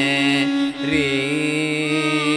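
Carnatic classical music: a long held note over a steady drone, breaking off briefly just under a second in before the held note resumes.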